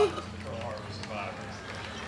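A man's voice over a public-address system, with a steady low hum and street crowd noise underneath; a car horn's held note cuts off right at the start.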